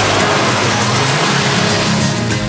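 A car engine running, a loud rushing noise, over the low notes of background music.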